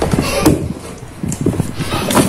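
White plastic food container being handled and its lid pressed shut, with a sharp click or knock about half a second in and a few softer knocks after.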